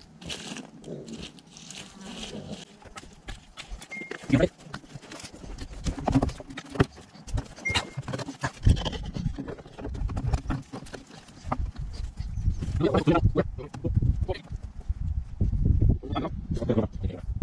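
Stones, soil and a chunk of cement being dug out of a trench by hand: scattered knocks and scraping of rock and earth, with a low rumble from about halfway through.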